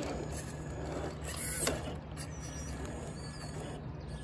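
Traxxas TRX-4 Sport RC crawler driving up, its electric motor and geared drivetrain whirring and rattling, with a louder burst of gear noise about a second and a half in. Birds chirp briefly in the background.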